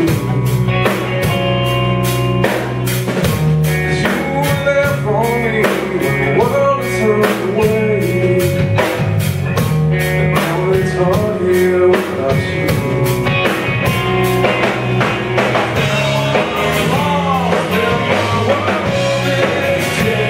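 Live rock band playing: a man singing lead over electric bass, guitar and a drum kit keeping a steady beat.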